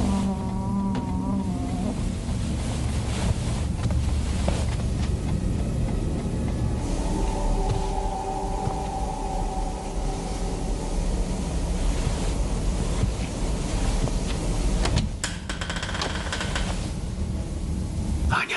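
Horror-film suspense sound design: a steady low rumbling drone, with wavering eerie tones in the first couple of seconds and a held tone in the middle. About fifteen seconds in, sharper, higher sounds break in as a sting.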